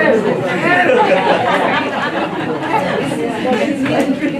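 Several people talking at once, an overlapping chatter of voices in a large hall.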